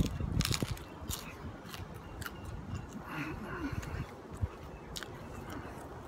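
A bite into a crisp deep-fried bolani, a potato-filled pastry, with a cluster of crunchy cracks in the first second or so, then chewing. Wind rumbles on the microphone throughout.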